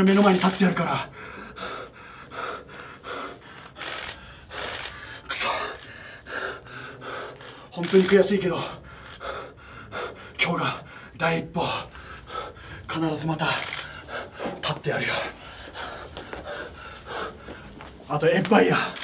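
A man breathing hard in heavy gasps after a wrestling match, broken by a few short voiced groans or words; the loudest come near the start and about eight seconds in.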